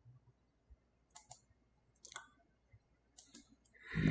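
Computer mouse clicking quietly: three quick pairs of clicks about a second apart. Just at the end a much louder, noisy sound swells up.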